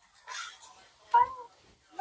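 A woman's soft breathy exhale, then a brief high-pitched hum about a second in.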